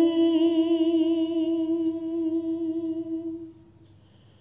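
A single voice holding one long sung note with a slight waver, unaccompanied, fading out about three and a half seconds in.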